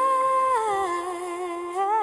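A woman's voice holding a long, mostly wordless sung note with slight vibrato, sliding down in pitch about half a second in and rising again near the end, with almost no accompaniment.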